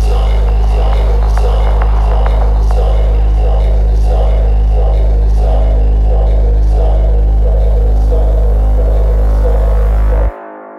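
Downtempo psychedelic electronic music: a loud, steady deep bass drone under a repeating synth pattern.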